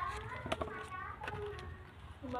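Children's voices talking in the background, with a couple of light clicks.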